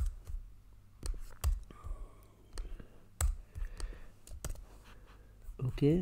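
Irregular, scattered clicks from a computer mouse and keyboard, about ten over several seconds. A man's voice starts near the end.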